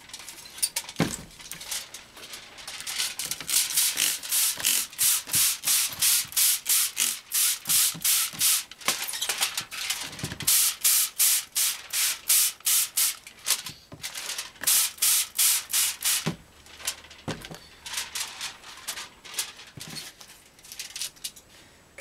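Gloved hand rubbing a crinkly aluminium foil lithography plate in a tub of water, in quick rhythmic strokes several a second with a couple of short pauses. This is the plate being rinsed after its white-vinegar etch.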